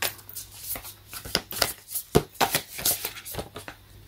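A deck of large round oracle cards being shuffled by hand: a string of irregular clicks and flicks as the cards slide and tap against each other.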